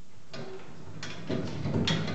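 The pump-lever linkage and crank of a pumped cart turning its flywheel, weighted with lead weights on threaded rod, in freewheel, with a few light ticks and knocks and one sharper click near the end. It goes smoothly, without the clank at the top and bottom of the stroke that the heavier flywheel has cured.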